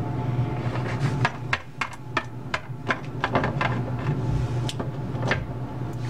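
Irregular light clicks and taps of small plastic toy figures being handled and set down on a tabletop, over a steady low hum.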